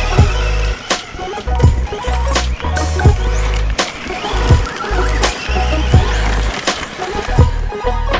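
Background music: an electronic track with a steady kick-drum beat, about one and a half beats a second, over a deep sustained bass line.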